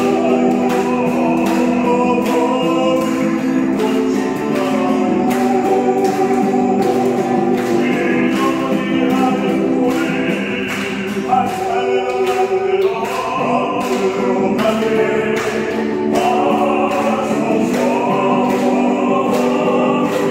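Acoustic guitar strummed in a steady rhythm, accompanying voices singing a gospel-style worship song.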